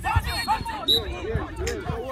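Several people shouting and calling out at once from the sideline of a flag football game, with a dull thump just after the start.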